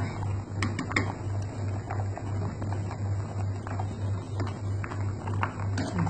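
A pot of pig's blood soup boiling on the stove: the bubbles pop and patter, and a few sharp clicks come from chopsticks against the pot near the start. A low hum pulsing about four times a second runs underneath.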